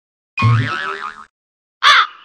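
Cartoon "boing" sound effect: a springy tone wobbling up and down for about a second, then a second short, arched boing starting near the end.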